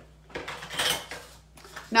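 Sheets of cardstock sliding and rustling against the mat as they are picked up, a brief scuffing swell about a second in.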